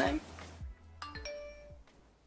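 A smartphone notification chime: a few short bell-like electronic notes ringing out about a second in.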